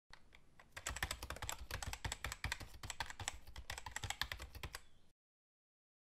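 Rapid computer-keyboard typing, a few scattered keystrokes at first and then a quick, steady run of clicks that cuts off suddenly about five seconds in.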